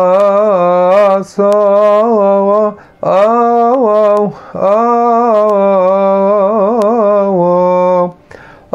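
A man chanting a Coptic hymn solo and unaccompanied, drawing each syllable out over long held notes that bend between pitches. Near the end the notes waver in quick ornaments, and there are short breaths about a second, three seconds and four and a half seconds in.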